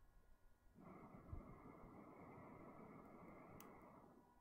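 A faint, steady rush of breath that starts about a second in and is held for about three seconds: a person blowing a long breath into a tinder nest to bring a spark from charred wood up to flame.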